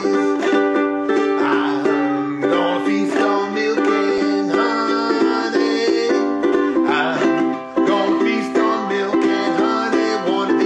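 Ukulele strummed in steady chords, playing a traditional gospel tune without vocals.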